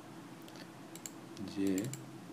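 A few scattered clicks from a computer mouse and keyboard, with a short spoken syllable about one and a half seconds in.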